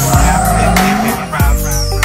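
Background music, with a pickup truck's engine and tyres underneath as it pulls away from the line.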